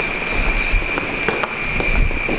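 Handling noise close to the microphone: rustling and a few light knocks as the camera is moved about, over a steady high-pitched whine.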